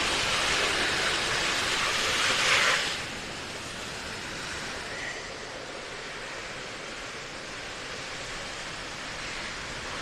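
Steady wash of sea surf on a beach: louder for the first three seconds, then dropping suddenly to a softer, even hiss for the rest.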